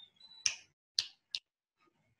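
Three short, faint clicks in a pause: the first about half a second in, the next two about half a second and a third of a second apart.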